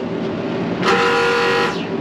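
A single steady, horn-like tone sounds once for about a second, starting a little before the middle, over a faint constant hum.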